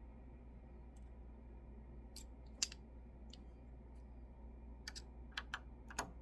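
Light, scattered clicks and taps of a small screwdriver and a sewing needle against the metal needle bar and needle clamp of a multi-needle embroidery machine during a needle change. There are about seven in all, the sharpest about two and a half seconds in, over a low steady hum.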